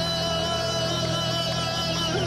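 Live Kurdish maqam performance: one long held note over a steady low drone.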